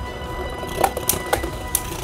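Beyblade Burst spinning tops whirring around a plastic stadium and clacking against each other in about three short, sharp hits in the second half, over steady background music.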